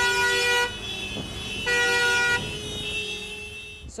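Tractor horns honking in protest over the low engine rumble of a tractor convoy: two loud blasts, each under a second long, the second starting about a second and a half after the first, with a quieter horn held in between and after.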